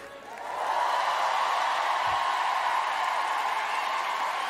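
Large studio audience applauding and cheering at the end of a song, swelling up within the first second and then holding steady.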